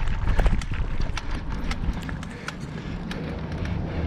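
Road bike rolling over cobblestones: a fast, irregular rattle of clicks and knocks over a low rumble, easing off about halfway through.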